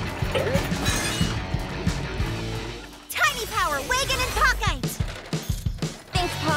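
Cartoon soundtrack: background music, then after a brief dip about halfway through, a run of pitched sounds sliding down in pitch, with voices mixed in.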